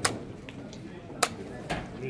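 Blitz chess clock slapped as a move is completed, a sharp click, then another sharp clack of the clock or a wooden piece set down a little over a second later, with lighter piece ticks between.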